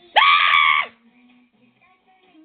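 A single loud, high-pitched scream, a little under a second long, that starts suddenly and cuts off.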